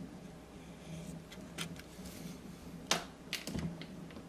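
Small clicks and taps of a plastic model kit and paintbrush being handled on a table: a sharp click about three seconds in, followed by a few lighter taps, over a faint steady hum.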